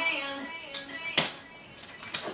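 The recorded pop song's last chord dies away, then two sharp clicks of clogging shoe taps on a hardwood floor as the dancer takes steps, the second louder.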